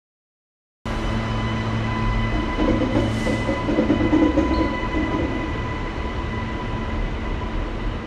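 Queensland Rail electric suburban train running along the tracks: a steady rumble of wheels on rail with a faint steady whine on top. The sound cuts in suddenly about a second in.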